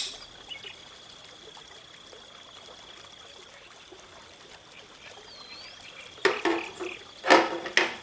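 A single sharp snip of bonsai scissors cutting off the central new candle of a Japanese black pine (summer mekiri). Then a faint steady high tone, and near the end two loud noisy bursts about a second apart.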